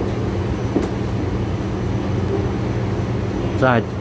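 Steady low hum of a stopped rubber-tyred metro train car standing with its doors open, from its onboard equipment and ventilation. A recorded announcement begins near the end.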